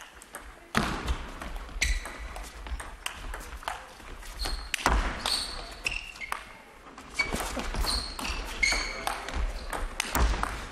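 A table tennis rally: the ball clicks sharply off bats and table at an irregular pace, mixed with short high squeaks of players' shoes on the court floor.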